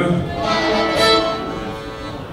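Fiddle bowed in a few long, held notes that fade away in the second half.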